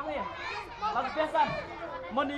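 Only speech: people's voices talking and chattering.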